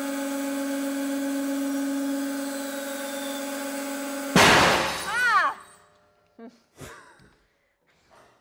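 Hydraulic press pump humming steadily as it loads a Prince Rupert's drop between coins to about 50 tonnes. About four seconds in, a sudden loud bang as the drop explodes under the load, and the press hum stops.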